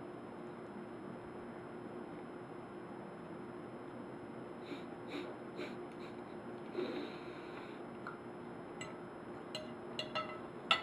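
Faint chewing of a mouthful of sugary pike conger eel, with a few soft crunches of its small bones and breathing through the nose, over a faint steady hum.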